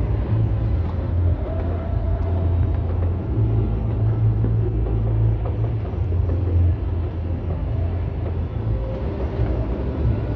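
Continuous low rumble of many distant fireworks going off across the city, the far-off bursts running together into one steady roll with no single bang standing out.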